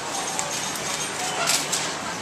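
Busy shop ambience: a steady hubbub of background voices, with a few sharp clicks about one and a half seconds in.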